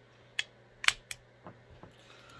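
Sharp metallic clicks from handling a stainless Ruger Super Redhawk Toklat revolver: three clicks in the first second or so, the middle one loudest, then a few fainter ticks.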